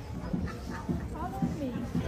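Indistinct voices of people close by, with a few short, high, wavering sounds mixed in.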